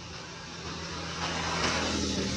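Engine hum of a motor vehicle, swelling louder in the second half as it passes.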